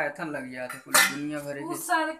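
Metal kitchen utensils clattering and clinking as they are handled, with one sharp metallic clink about a second in.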